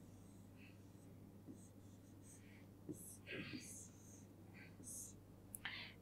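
Faint scratching and tapping of a pen on an interactive touchscreen board as a short number is written, in short strokes spread over a few seconds, over a low steady hum.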